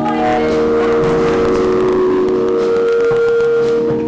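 Instrumental accompaniment of a Chinese opera holding a steady chord of several sustained notes.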